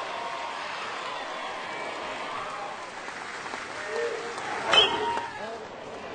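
Steady murmur of a baseball stadium crowd, then a sharp crack of a metal bat striking the pitch about five seconds in, with crowd voices rising around it.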